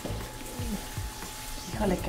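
Chicken stock poured from a glass jug into a hot pan of onions cooking in butter and oil, the liquid splashing in and sizzling at a low level.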